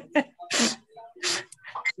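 Voices on a video call: two short, loud, breathy bursts of air, about three quarters of a second apart, between fragments of speech, most likely laughter.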